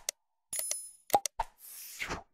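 Sound effects for an animated subscribe button: quick clicks, a bright ringing chime about half a second in, more clicks about a second in, and a whoosh near the end.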